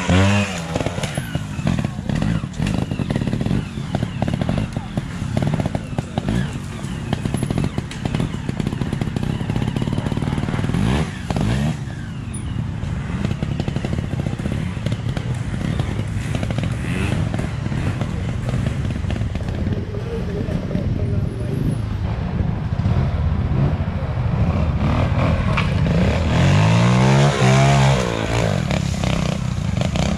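Trials motorcycle engines ticking over and blipping as riders climb a steep, rooty section. There are sharp rising-and-falling revs right at the start and again about three-quarters of the way through.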